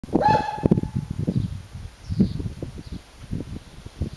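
A high-pitched shout of "Run!" held for about a second, followed by bursts of laughter.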